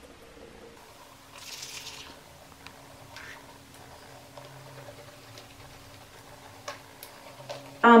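Manual toothbrush scrubbing teeth, with a soft bristly hiss about a second and a half in and a few faint clicks after it. A low steady hum runs underneath.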